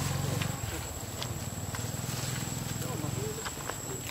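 Leaves and stems rustling and crackling in a few sharp clicks as a baby macaque pulls at ground plants. A few faint short squeaks come near the end, over a steady low hum that fades out about three seconds in.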